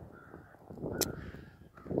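A faint bird call about a second in, over low outdoor background noise, with one sharp click.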